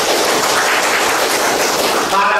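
Audience applauding: dense, even clapping that dies away near the end.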